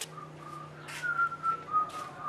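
A man whistling a simple tune through pursed lips: a thin line of held notes that drift slowly downward. Two short scraping noises cut in, about a second in and near the end.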